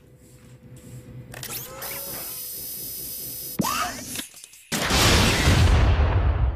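Bazooka sound effects: a rising whine that settles into a steady high hiss for about two seconds, and a sharp launch about three and a half seconds in. A loud explosion with a deep rumble follows near five seconds in and is the loudest sound.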